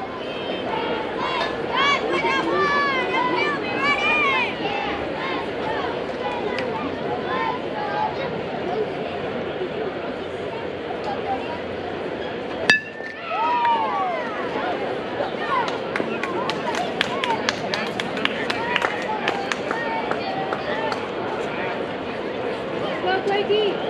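Spectators and players at a youth baseball game calling and shouting, then a single sharp crack of an aluminium bat hitting the ball about 13 seconds in. A long falling shout follows, then a spell of clapping and cheering.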